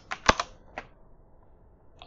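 Computer keyboard keys struck a few times in the first second, the loudest a single sharp clack, then quiet.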